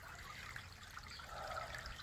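Garden fountain's water trickling faintly and steadily.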